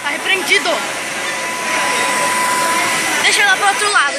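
High-pitched young voices calling out briefly just after the start and again near the end, over a steady rushing noise, with a thin steady high tone in the background in the middle.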